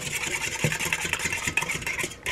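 A red-handled utensil stirring and scraping against a stainless steel mixing bowl, mixing yeast, sugar and warm water, with repeated scraping strokes.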